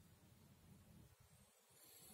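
Near silence: faint low room hum, with one soft swish of a paintbrush on paper near the end.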